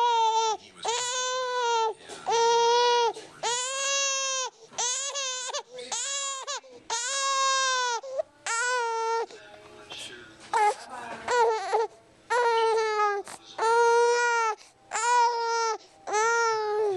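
An infant crying in repeated short wails, about one a second, with a brief lull about nine seconds in.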